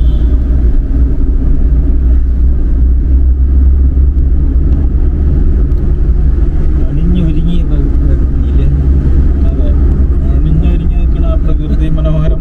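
Steady low rumble of a small car's engine and tyres heard from inside the cabin while driving, with voices talking over it.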